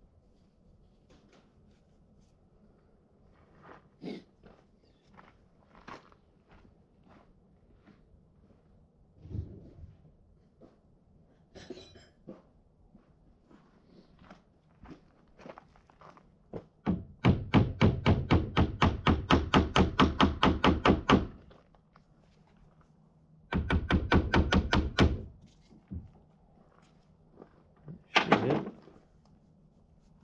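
Small hammer tapping rapidly on a tractor's hydraulic steering pump held in a vise, to knock the housing loose. Two runs of quick strikes, about six a second: the first lasts about four seconds, the second under two. Scattered light clicks of handling come before them.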